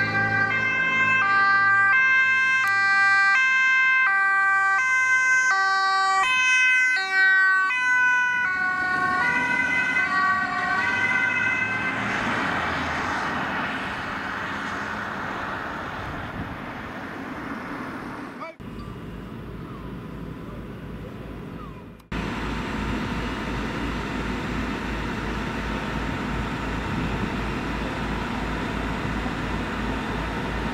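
Fire-service van's two-tone siren sounding as it drives past, high and low tones alternating about once a second, fading out after about ten seconds into road and engine noise. After a cut, a fire engine's diesel runs steadily with an even low throb.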